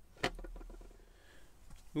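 Small-object handling on a tabletop: one light knock about a quarter of a second in, then faint rustling as a small cardboard box is picked up.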